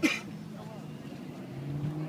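People talking in the background, unclear and not near, with a short sharp sound at the very start.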